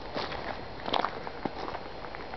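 Footsteps on dry leaves and dirt, a few uneven steps with light crackling, the clearest about a second in.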